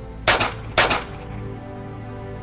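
Two gunshots about half a second apart, sharp and loud, each with a brief echo, over a steady, tense music score.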